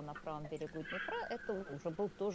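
Faint speech underneath: a woman talking in Russian, the original interview audio left quietly under the English dub.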